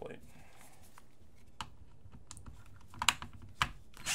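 A few light clicks and knocks of a tool being handled against a wooden box, the sharpest about three seconds in, as a driver is brought to the screws.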